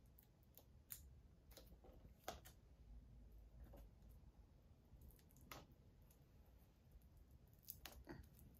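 Faint handling noise: a handful of short, scattered clicks and light plastic ticks as a Blu-ray case is handled and worked at its edge with a small pointed tool.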